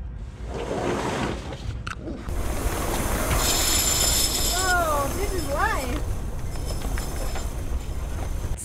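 Wind buffeting the microphone as a mainsail drops down the mast once its halyard is let go, with a rushing hiss of sailcloth and line running for a couple of seconds around the middle. A short voiced exclamation comes near the middle too.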